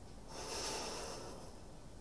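A woman taking one audible breath, a soft hiss lasting about a second.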